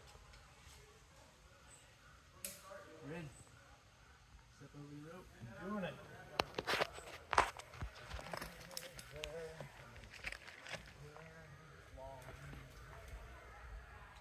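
Faint voices of people talking at a distance, with a few sharp clicks about six to seven and a half seconds in.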